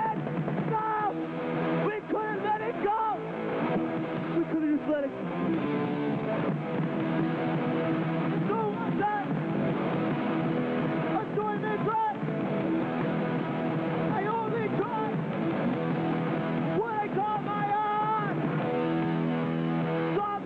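Live hardcore punk band playing: electric guitars, bass and drums going continuously, with a voice over it at times.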